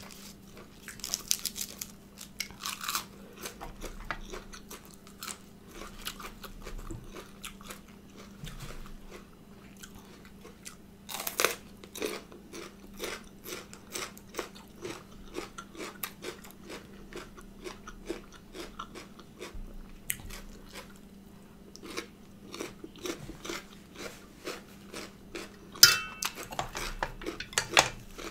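Close-up chewing and crunching of raw herbs and vegetables, a dense run of small crisp crackles. A faint steady hum runs underneath.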